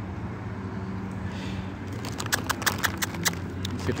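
Dry leaves crackling underfoot in an irregular string of sharp clicks from about halfway in, over a steady low hum.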